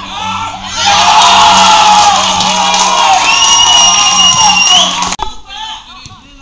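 Spectators and players cheering and shouting loudly at a football match, starting about a second in, with one long, high, held note near the end; it all cuts off suddenly about five seconds in.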